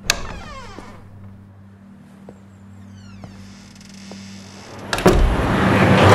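A sharp click, then a faint low hum with a few small ticks. About five seconds in, a loud rushing rumble of road traffic swells up as a container truck passes.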